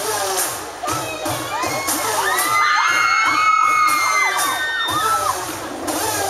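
Audience of young spectators screaming and cheering, many high voices overlapping, swelling through the middle and easing near the end, over a dance track's beat.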